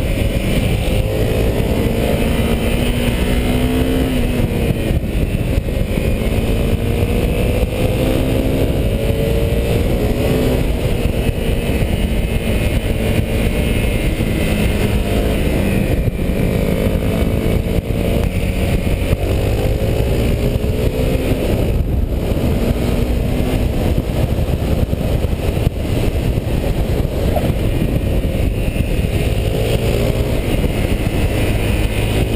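Honda CRF250M's single-cylinder four-stroke engine being ridden hard on track, its pitch climbing again and again as it accelerates and dropping back for the corners. Heavy wind rush on the camera microphone runs underneath.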